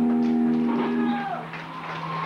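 A single held electric guitar note rings on steadily, then cuts off a little over a second in, leaving the crowd's chatter and shouts.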